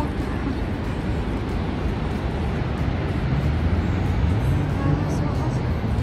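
Steady outdoor rush and rumble of road traffic and the distant falls, with a low vehicle engine drone coming in about halfway through.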